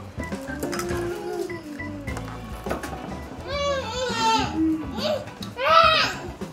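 Young children's voices over background music, with a small child letting out high-pitched crying wails about midway and again near the end.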